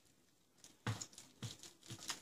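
A carving knife sawing down through a baked leg of ham in a foil-lined roasting tray: several faint, short strokes beginning about half a second in.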